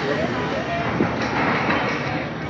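Rattling, clattering roller coaster machinery with people's voices mixed in, and a single knock about a second in.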